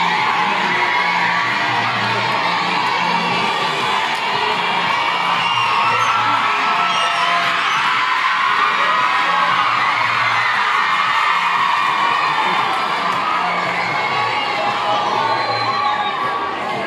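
Music with a repeating bass line plays under a crowd of schoolgirls cheering and shouting.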